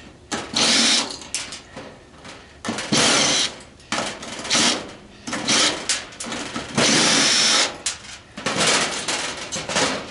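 Cordless power driver with a 3/8 socket spinning brass nuts off a dryer's terminal block, running in about six short runs of half a second to a second each, with brief pauses between them.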